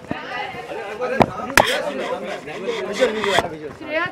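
Background voices of a crowd, cut by a few sharp clicks from press photographers' camera shutters: two close together just over a second in and another near the end.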